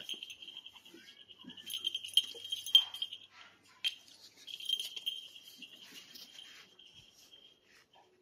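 An otter and a monkey scuffling at play on a concrete floor: soft scrabbling with a few sharp clicks and clinks, the sharpest about three and four seconds in. A steady high pulsing trill runs beneath them.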